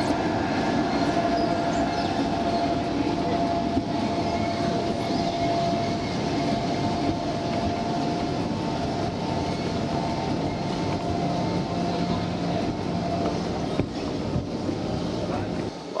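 Steady mechanical rumble with a faint, level whine, the machinery noise of a large airport hall, with faint voices in the background.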